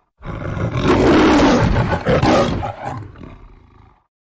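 The MGM logo's lion roar: a long roar, then a shorter second one, fading away toward the end.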